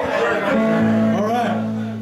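Electric guitar sounding a low note that rings on steadily for well over a second, with talk over it.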